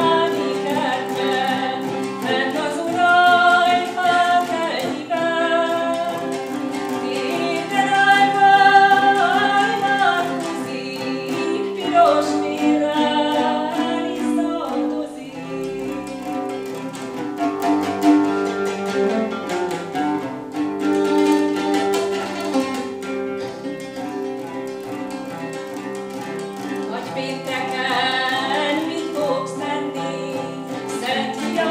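A woman singing and accompanying herself on a lute plucked with a plectrum: sung phrases over a continuous plucked-string accompaniment.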